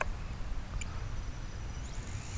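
Low wind rumble on the microphone with a click at the start. Near the end the Blade 180 CFX's new 3S brushless motor begins to spool up, a rising high whine as the rotor comes up to speed.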